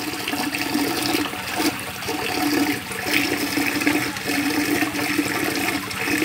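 Water pouring and splashing steadily into a fish hatchery tank, churning the water into bubbles.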